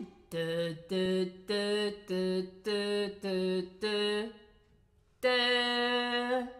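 A woman singing unaccompanied: a run of seven short, evenly spaced notes that stay on nearly the same pitch, then, after a short pause, one longer held note a little higher. It demonstrates a repetitive melody with little note change.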